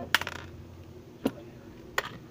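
Crunchy slime mixed with bits of straw, stars and rocks being stretched and squeezed by hand, popping. A quick run of sharp pops and clicks comes just after the start, then single clicks a little over a second in and near the end.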